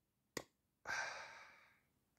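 A brief click, then a man's soft breathy sigh lasting about half a second.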